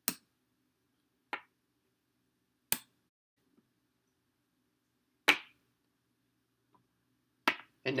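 Checkers pieces set down by hand as moves are played: five short, sharp clicks, irregularly spaced a second or more apart.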